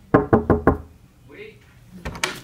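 Four quick knuckle knocks on a wooden office door, followed about a second later by a faint short voice.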